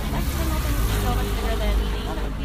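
Steady low engine rumble of a canal tour boat passing close by, with indistinct voices over it.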